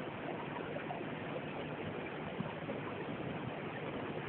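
Steady rushing of water pouring through a canal lock's gate sluices into the chamber as it fills.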